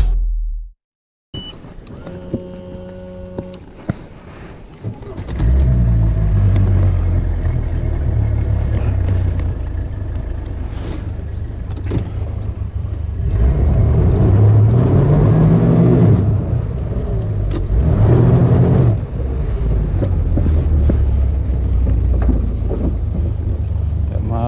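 A Mercury outboard motor starts about five seconds in, after a brief beep, and idles steadily, rising and falling in pitch twice as it is throttled.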